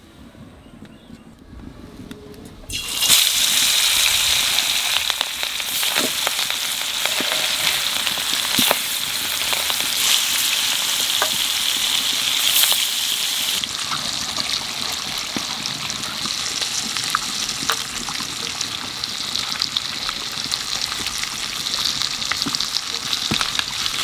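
Turmeric-coated fish steaks frying in hot oil in a wok. The sizzle starts suddenly about three seconds in and then runs on steadily, with a few sharp clicks.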